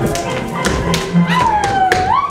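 Polish folk dance music with dancers' shoes stamping and tapping on the stage floor in time with the beat, and a long gliding whoop that dips and then rises near the end.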